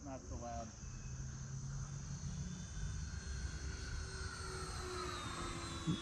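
Faint, smooth whine of the E-flite A-10 Thunderbolt II RC jet's 64 mm electric ducted fans, sliding slowly down in pitch as the plane flies past; the multi-blade fan rotors keep it quiet rather than shrill. Crickets chirp steadily underneath.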